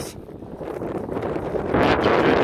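Wind buffeting the microphone, a steady rushing that swells into a loud gust near the end.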